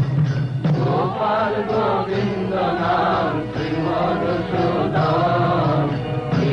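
Devotional hymn chanted to musical accompaniment, the voices coming in about a second in with slow, wavering melodic phrases.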